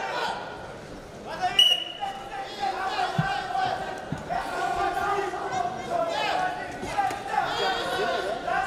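Shouting voices of coaches and crowd echo in a wrestling arena during a Greco-Roman bout. About one and a half seconds in, a short referee's whistle blast is the loudest sound, as the bout restarts. A couple of dull thuds follow a second or two later as the wrestlers lock up.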